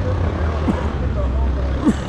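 City street traffic: a steady low engine rumble from vehicles at an intersection, with brief snatches of passing voices.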